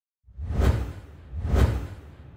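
Two whoosh sound effects with a deep bass rumble, swelling and fading about a second apart, then a fading tail: the sound design of an animated logo intro.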